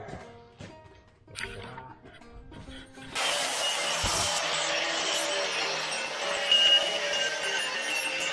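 Handheld angle grinder switching on about three seconds in and running steadily against steel exhaust headers, a loud grinding hiss with a high whine over it, smoothing down rough, rusted metal.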